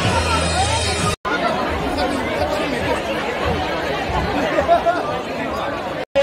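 About a second of Tibetan circle-dance music that cuts off abruptly, then the chatter of a large crowd, many people talking at once in a big hall.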